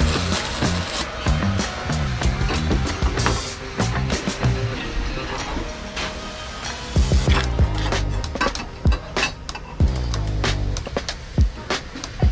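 Background music with a steady beat and a bass line.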